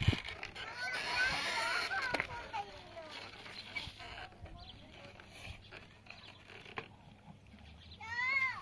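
A thump at the very start, then short high-pitched vocal sounds over the next two seconds, after which only quiet outdoor background remains.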